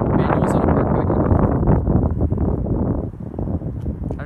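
Loud, low wind buffeting on the microphone, getting through its windscreen; it eases a little about three seconds in.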